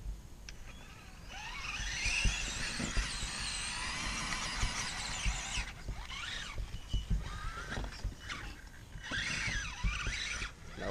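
Electric RC truck's motor and gear drive whining as it climbs a dirt slope, the pitch rising and falling with the throttle. There is one long stretch from about a second in to past the middle, then shorter whines near the end.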